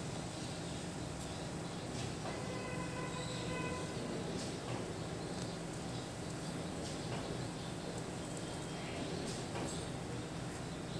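Steady low hiss of a lit gas stove burner under a pot of heating oil, with a few faint ticks. A faint, brief stacked tone sounds about two seconds in.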